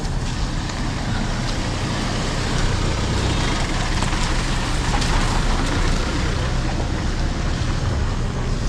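Motorcycle engine running at low speed, a steady low hum, with wind noise rushing over the microphone, swelling slightly midway.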